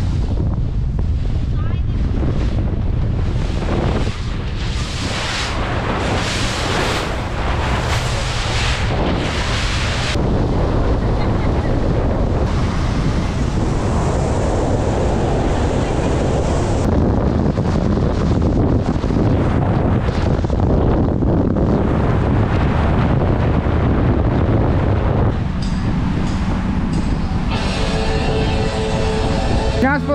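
Wind buffeting the microphone on a motorboat running fast through choppy water, over a steady low rumble of hull and water. The wind gusts come strongest in the first ten seconds.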